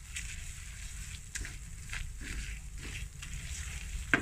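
Butter and flour (maida) roasting in a nonstick frying pan, sizzling faintly while a spatula stirs and scrapes the paste against the pan, with a few short scrapes standing out. The flour is being cooked in butter without browning, the first stage of a roux.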